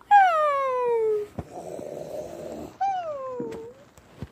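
A child imitating cartoon snoring: a rough snore on the in-breath between two long falling whistle-like tones on the out-breath, the first lasting about a second, the second shorter near the end.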